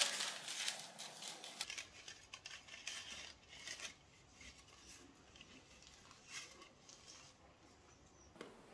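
Parchment paper rustling and crinkling faintly as a strip is fitted against the inside of a stainless steel cake ring, the rustles busiest in the first couple of seconds and then sparse.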